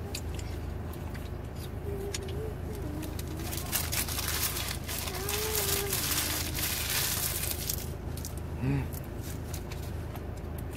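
Paper sandwich wrapper crinkling and rustling in the hands, loudest from about four to seven seconds in, with a few muffled hums from a full mouth over a steady low hum inside the car.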